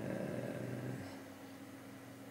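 A man's low, wordless hesitation murmur lasting about a second, then faint room tone.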